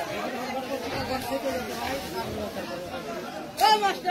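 Several people talking over one another, with one loud, high call near the end.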